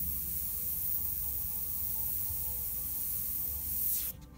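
Gravity-feed airbrush spraying paint: a steady hiss of air that cuts off suddenly at the very end as the trigger is released.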